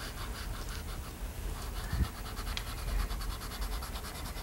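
Pastel sticks scratching across easel paper in quick, even back-and-forth coloring strokes, with a soft knock about two seconds in.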